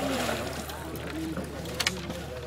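A hooked fish thrashing and splashing at the water surface beside a landing net, with a sharp splash near the end. Faint voices can be heard behind it.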